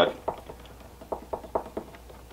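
A stir stick mixing two-part rigid foam resin in a plastic cup, giving light, irregular ticks and scrapes against the cup wall.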